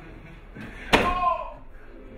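A single loud slam about a second in, as a hinged frame or hatch in a stage wall is banged shut, followed at once by a brief vocal exclamation.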